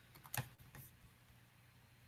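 A few faint computer keyboard keystrokes, the clearest about half a second in, over near silence.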